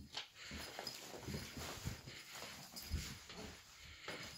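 Soft, irregular thumps and scuffles of a cat's paws on a laminate floor as it pounces on and runs after a tinsel toy, the loudest thump about three seconds in.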